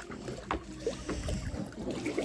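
Water sloshing and lapping in a small plastic pool as people move about in it, with one sharp click about half a second in.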